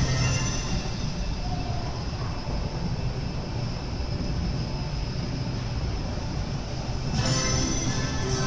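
A running carousel: a steady low rumble from the turning ride under carousel music. The music fades in the middle and grows louder again about seven seconds in.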